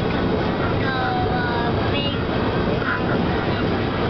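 Steady road and engine noise inside a moving car's cabin, with a young boy's high voice heard briefly in the first half.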